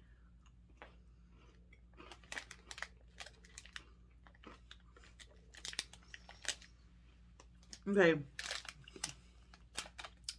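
Crunchy chewing of white-chocolate-coated cereal mini biscuits, an irregular run of crisp crunches starting about two seconds in and dying away before the end.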